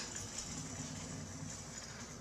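A round disc set down with a click on a granite countertop, then slid along the stone with a low rumble.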